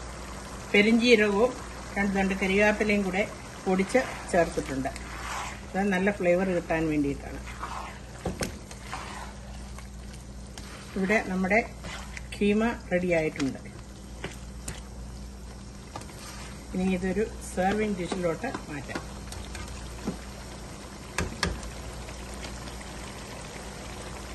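A woman speaking in short phrases, with a spoon stirring ground-beef keema simmering in a sauce in a nonstick pan between them, and a few light clicks of the spoon against the pan.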